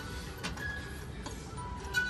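Wind-up music box in a wooden rocking-horse figurine playing a few slow, separate plucked notes of its tune.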